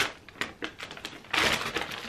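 Paper takeaway bag rustling and crinkling as a hand rummages inside it, with scattered small clicks and a louder rustle about a second and a half in.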